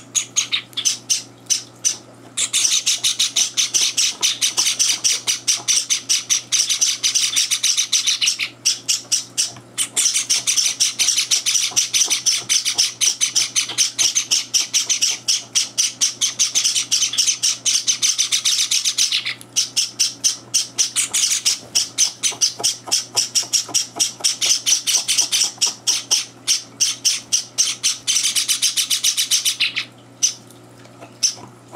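Java sparrow chicks begging for food as they are hand-fed from a feeding tube: a loud, rapid, continuous stream of high-pitched chirps, broken by short pauses about 2, 9 and 19 seconds in.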